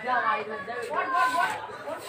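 Indistinct chatter of voices with no clear words.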